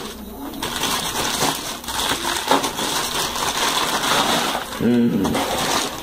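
Scissors cutting through a plastic mailer bag, with the plastic crinkling and rustling as it is pulled and handled. A brief vocal sound comes near the end.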